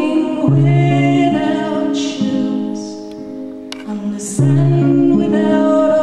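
A woman singing a slow folk song to her own guitar, holding long notes, with guitar chords sounding about half a second in and again past the four-second mark.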